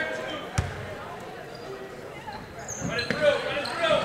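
A basketball bounces once on a hardwood gym floor about half a second in, over a murmur of spectators' voices in the gym.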